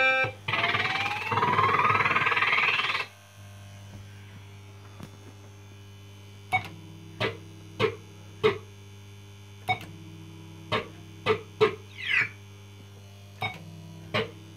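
PCP Blankity Bank fruit machine's electronic sound effects: a loud rising sweep for the first few seconds, then the machine's steady hum with a run of short sharp blips, roughly one or two a second, and a brief falling chirp near the end while the reels spin.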